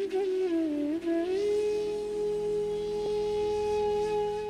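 Intro music on a flute: a short ornamented phrase that wavers through a few notes, then one long held note, over a steady low drone.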